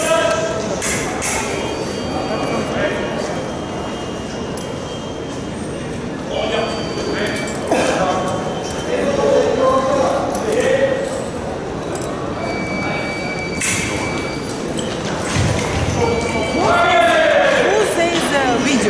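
Large sports-hall ambience with background voices, scattered sharp clicks and several brief high ringing tones.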